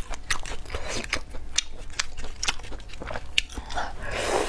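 A person biting and chewing crunchy food close to the microphone, with sharp crunches about three or four times a second.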